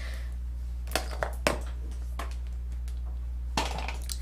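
A few light clicks and taps from makeup products being handled, such as a compact being picked up and opened, over a steady low hum.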